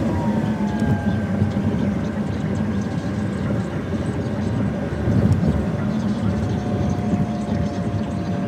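Road noise heard inside a car driving on a highway: a steady rumble of tyres and engine, with a faint whine that slowly falls in pitch.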